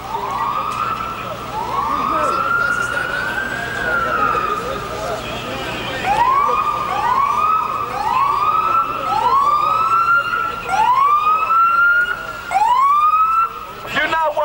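Emergency vehicle siren: two long, slow wails in the first few seconds, then from about six seconds in a quicker run of short rising sweeps, about one a second.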